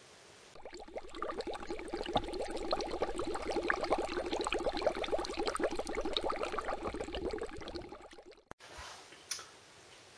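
Bubbling liquid: a dense, rapid patter of small pops and gurgles that starts about half a second in and dies away near the eighth second.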